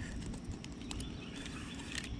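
Faint scattered clicks and light knocks from handling a plastic digital fish scale and its lip gripper while it is switched on and set up, over a low steady rumble.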